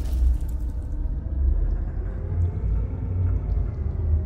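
Deep, steady rumble of a cinematic logo-intro sound effect, swelling and easing slowly, with a few faint ticks above it.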